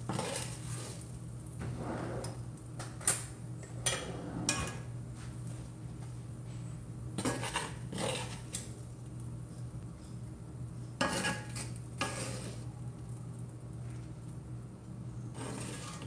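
A metal utensil scraping and clinking in a cast-iron skillet and against spaghetti squash shells, in irregular strokes with a few sharper clinks, as squash is scraped out and stirred into the pan. A steady low hum runs underneath.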